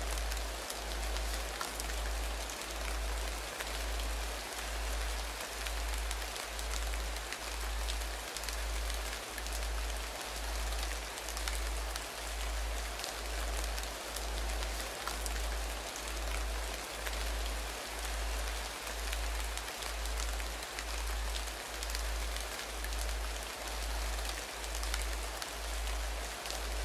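Steady rain soundscape with a low hum underneath that swells and fades evenly a little more than once a second, the beating of a binaural meditation tone.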